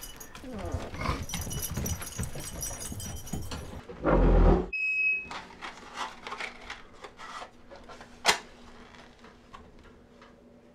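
Rustling and clattering of handling noise that ends in a heavy thump, then a fire being laid and lit in a wood stove: scattered small clicks and crackles with one sharp snap about eight seconds in, over a faint steady hum.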